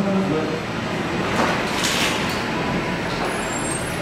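Steady noise of road traffic, like a heavy vehicle passing, with low murmured voices in the room.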